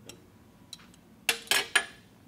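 Steel lathe chuck key clinking against the chuck: a faint click, then three sharp metallic clinks in quick succession, each with a brief ring, in the second half.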